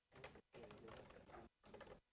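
Faint computer keyboard typing, a scatter of separate key clicks.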